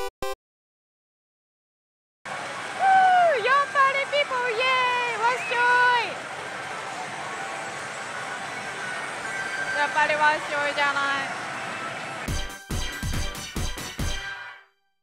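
Steady din of a pachislot parlour, with a woman shouting in long, sliding calls over it twice. A short choppy music sting comes in near the end.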